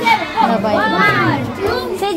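Children's voices: high-pitched chatter and calls of children at play, overlapping throughout.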